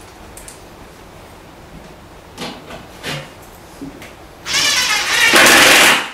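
A cordless drill/driver driving a set screw into a wooden cabinet panel. The drill's whir starts about four and a half seconds in and runs for about a second and a half, louder toward the end. It follows a few light knocks from handling the parts.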